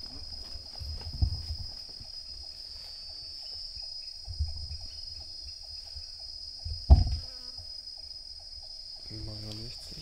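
Steady high-pitched chorus of tropical forest insects, with a regular ticking call about four times a second underneath. A few low thumps break in, the loudest about seven seconds in.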